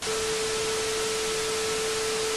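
Television static sound effect: a steady hiss with a single steady mid-pitched test tone held under it.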